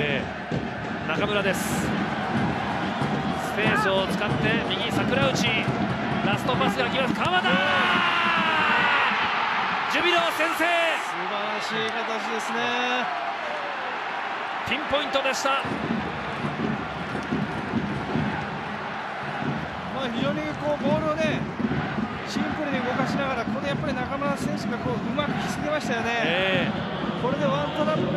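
Japanese TV football commentary over stadium crowd noise, the voice rising in excitement about eight seconds in.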